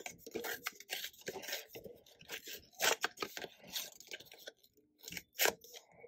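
Brown kraft paper being torn by hand in short, irregular crackly rips, with louder rips about three seconds in and again near the end.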